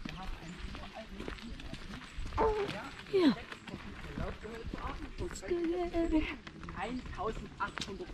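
Indistinct voices of people with short vocal exclamations, over footsteps on a cobblestone path.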